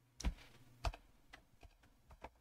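Typing on a computer keyboard: two sharper key strikes in the first second, then a few lighter keystrokes.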